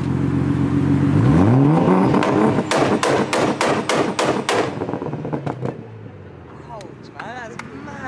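Tuned Nissan Skyline R34 GT-T's turbocharged straight-six revved while stationary. The revs climb about a second in, then a rapid string of loud exhaust bangs follows for about two seconds as the revs drop, before the engine settles back to a quieter idle.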